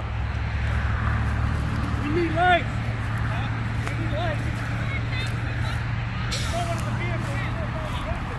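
A steady low drone of a vehicle engine idling, with faint voices talking at a distance.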